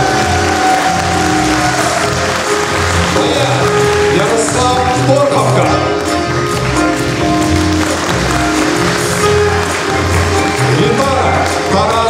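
Live instrumental ensemble of accordion, double bass, violin and drums playing an upbeat tune, with sustained melody notes over a steady bass beat.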